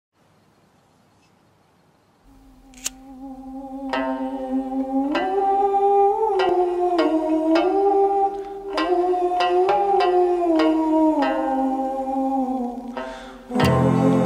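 Opening of a slow folk song. After about two seconds of near silence, a single sustained melody line of long held notes that glide from one pitch to the next fades in. Near the end a fuller, louder accompaniment with deep low notes comes in.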